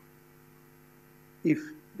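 Steady electrical mains hum, a low drone with several overtones. A man says a single word about one and a half seconds in.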